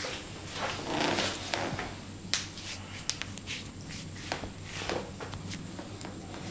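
Hands rubbing and gripping skin and clothing during an arm and hand massage, a soft rustling friction broken by a few short, sharp clicks.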